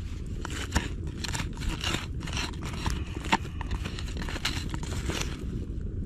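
A wooden stick poking and scraping among burning embers inside a small dirt-mound oven, with irregular crackles and scrapes that die down about a second before the end.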